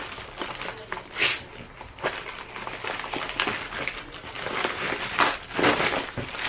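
A thin plastic packaging bag crinkling and rustling as it is pulled open by hand, in irregular bursts with small clicks.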